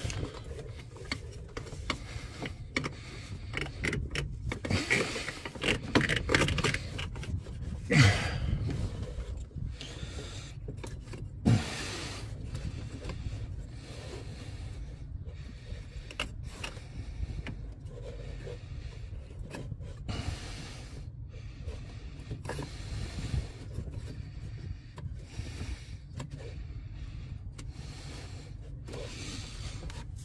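Hands working coolant hoses and fittings in a van's engine bay: intermittent rustling and scraping of rubber and plastic parts, with two sharper clicks about 8 and 11 seconds in, over a steady low rumble.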